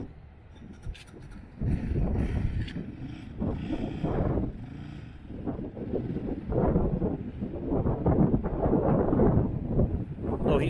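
Wind buffeting the microphone in uneven gusts, swelling and dropping over the few seconds.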